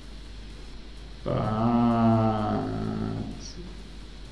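A man's voice holding one long, drawn-out hesitant "But..." for a little under two seconds, starting about a second in, over a low steady background hum.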